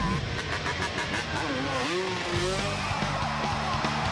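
A motocross bike's engine revving, its pitch rising and falling, mixed with a voice and music.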